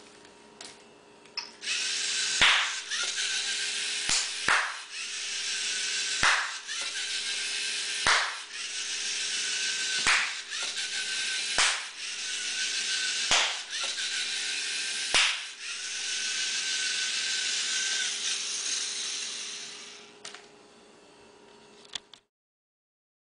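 LEGO Mindstorms NXT servo motors whirring steadily as the small robot drives over the floor. About nine sharp hand claps come roughly every two seconds, each one loud enough to trip the sound sensor and switch the robot between driving forward and backward. The motors stop near the end.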